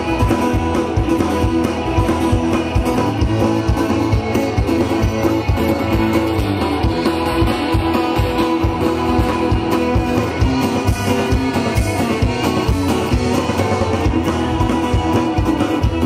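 Live red dirt/southern rock band playing an instrumental passage: electric and acoustic guitars, fiddle and a steady drumbeat, without vocals.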